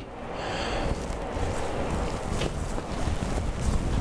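Steady rushing wind noise from an electric fan's airflow on the microphone, building over the first second and then holding.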